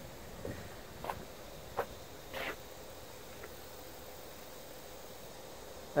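Faint, steady outdoor background hiss, with a few short soft clicks in the first half.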